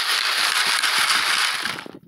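Dirt and small rock chips rattling on a quarter-inch mesh Garrett classifier screen as it is shaken, a steady dense rattle that stops near the end.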